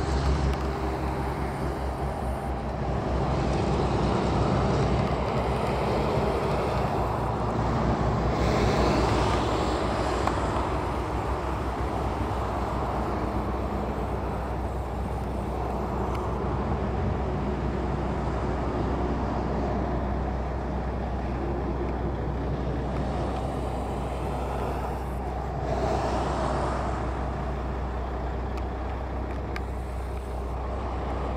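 Highway traffic from cars and semi-trucks, a continuous noise that swells as vehicles pass, about 4, 9 and 26 seconds in.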